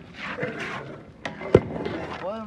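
A brief rustling scrape, then two sharp knocks, the louder one about a second and a half in.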